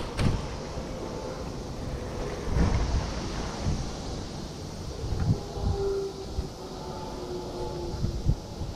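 Outdoor street ambience with a low rumble and a few irregular low thumps of wind buffeting the microphone. A faint steady hum joins in during the second half.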